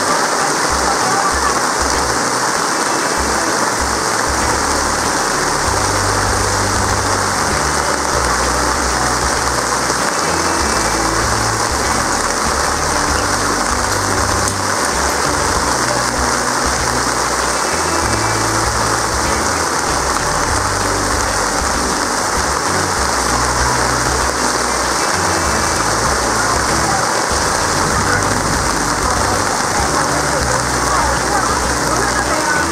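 Heavy rain falling steadily on wet ground and puddles, a loud, even downpour.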